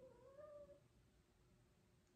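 A domestic cat gives one faint, short meow that rises then falls, lasting under a second. Near silence follows.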